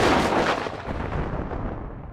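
A thunderclap rumbling, loudest at the start and slowly fading.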